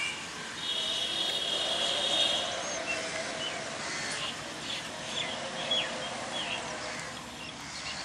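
Birds chirping and calling, with crows among them, over a steady outdoor hiss.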